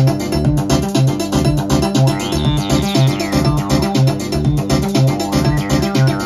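Eurorack modular synthesizer jam: a Weston Precision Audio B2 kick/bass voice plays a repeating melodic bass line, about two notes a second, under busy electronic percussion. About two seconds in, a higher sweeping tone rises and falls back.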